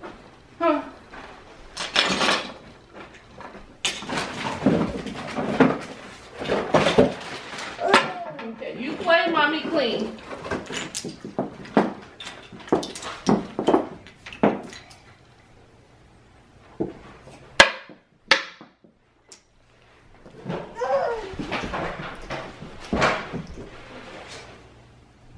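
Short wavering voice sounds without clear words, between stretches of rustling and handling noise, with two sharp knocks about three-quarters of the way through.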